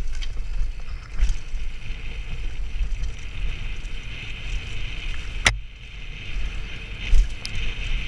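Downhill mountain bike rolling fast over a dirt trail, heard from a helmet camera: a steady low rumble of wind buffeting the microphone and tyre and bike rattle, with one sharp click about five and a half seconds in.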